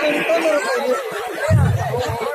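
Speech over a stage PA: a man talking into a microphone with other voices chattering, and a brief low thump about one and a half seconds in.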